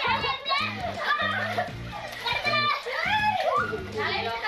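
Children's excited voices while playing in water, over background music with a steady bass line.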